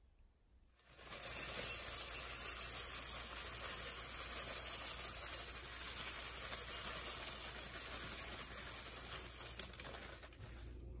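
Crushed cornflakes poured in a steady stream into a ceramic bowl: a dense, crackly patter of dry flakes that starts about a second in and stops near the end.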